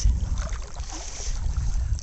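Wind buffeting the camera microphone: a low, steady rumble.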